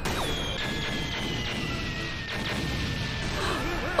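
Anime episode soundtrack: dramatic background music under battle sound effects of crashes and impacts, with a thin high tone slowly falling in pitch.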